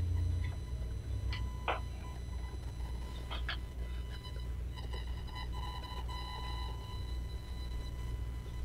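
Meeting-room tone: a steady low hum with a few short rustles and clicks in the first half, and a faint steady tone about five to seven seconds in.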